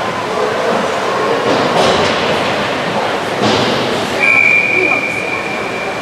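Ice-rink game noise: blades scraping the ice with players' and spectators' voices mixed in, and a few short hissing strokes. About four seconds in, a steady high whistle starts and holds for about two seconds.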